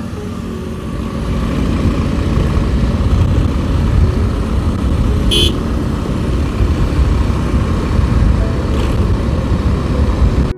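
Motorcycle ride at speed: heavy wind rumble on a helmet-mounted microphone over the bike's engine and surrounding traffic. A short, high-pitched horn toot about five seconds in.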